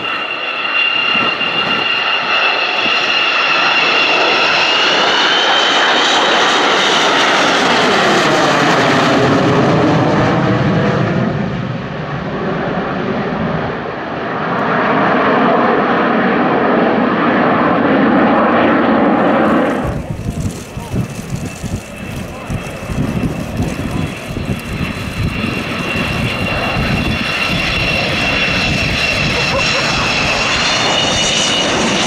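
Avro Vulcan XH558's four Rolls-Royce Olympus turbojets on a low flypast: a loud jet roar with a high, steady whine, its pitch sweeping down as the bomber passes about a third of the way in. About two-thirds through the sound changes abruptly to a rougher, gusting rumble, and the high whine returns near the end.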